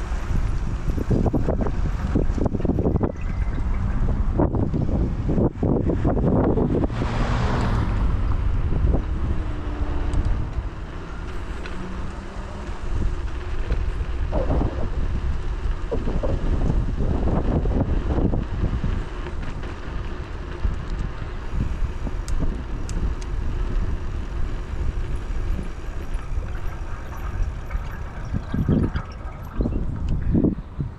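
Wind buffeting the microphone of a moving rider, a steady low rumble with repeated gusty surges, heaviest in the first third and again near the end, over road noise.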